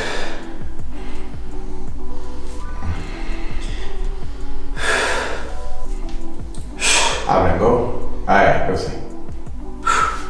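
Background music with sustained notes, over which a man takes about four sharp, loud breaths while flexing in bodybuilding poses, the first about halfway through and the rest toward the end.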